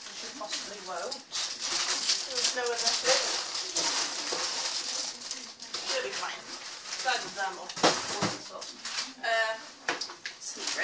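Indistinct voices talking in a small room, not close to the microphone, with rustling and handling noise as a paper bag is packed.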